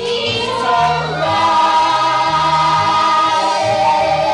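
A group of children singing together over a low accompaniment, moving through a short phrase and then holding a long sustained note from about a second in.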